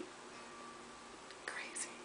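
Quiet room hiss, with a soft breathy sound from the woman about one and a half seconds in.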